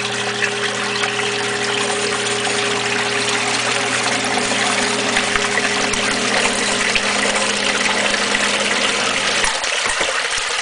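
A 115-volt submersible backup sump pump running in a sump pit, with a steady electric hum over churning, rushing water. The hum cuts off about nine and a half seconds in, which is the pump shutting off once the pit is pumped down, while the water noise goes on.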